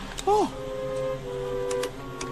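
Cartoon soundtrack: a brief voiced exclamation just after the start, followed by soft held background-music notes that step down slightly about halfway through.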